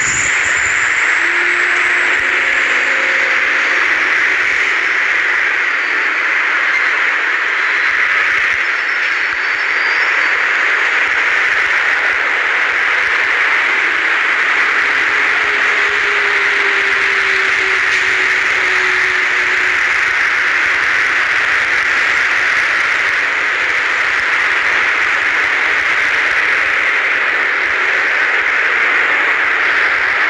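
Loud, steady static-like hiss with no breaks, strongest in the upper-middle range. Faint tones show through it briefly a couple of seconds in and again around the middle.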